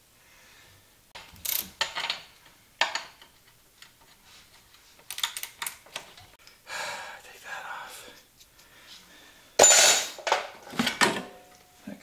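Metal tools clinking and knocking against the rear shock mounting of a 1983 Maico 490 dirt bike as the shock bolt is worked out. The clinks are scattered, with a louder cluster of clanks near the end.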